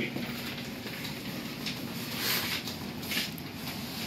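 Paper rustling and scuffing handling noise, with two brief louder rustles about two and three seconds in, over a steady low hum.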